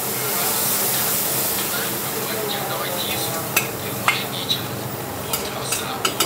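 Stir-fry sizzling in a hot wok while a metal ladle stirs and tosses it, with a few sharp clinks of the ladle against the wok in the second half.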